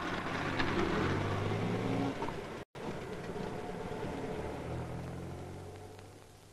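City street traffic: buses and cars running past with a steady engine drone. The sound drops out for an instant about halfway through, and another engine hum swells up near the end.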